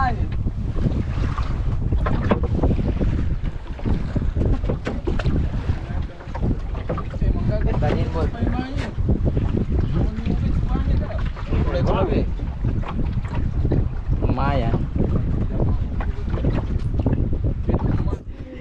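Wind rumbling on the microphone on an open boat at sea, with waves sloshing against the hull.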